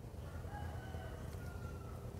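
A faint rooster crow: one long call lasting over a second, dipping slightly in pitch near its end.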